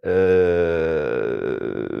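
A man's drawn-out hesitation sound, a steady "eee" held at one pitch for about two seconds in the middle of a sentence.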